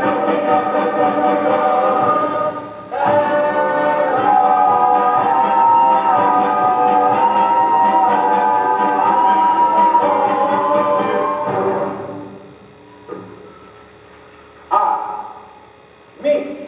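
Stage performers, men and a woman, singing a show tune together in long held notes, with a brief break about three seconds in. The singing ends about twelve seconds in, leaving quieter hall sound and one short burst of sound near the end.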